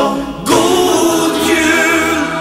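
Group of voices singing together in a song, with a held note coming in about half a second in.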